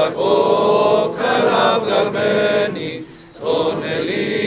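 Group of voices singing a slow Greek Orthodox memorial chant in long held notes, with a short break between phrases about three seconds in.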